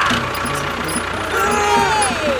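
An engine running steadily at idle with a low, even pulse. About one and a half seconds in, gliding whistle-like tones join it.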